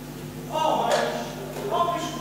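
A man singing verse into a handheld microphone, starting about half a second in, in held notes. A steady low hum lies underneath.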